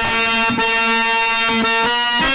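Harmonium holding a steady reed chord, shifting to other notes about one and a half seconds in, with a brief click about half a second in.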